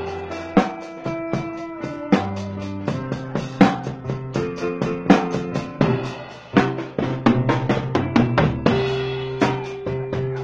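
Live instrumental music with a drum kit keeping a steady beat under held melody notes and a bass line.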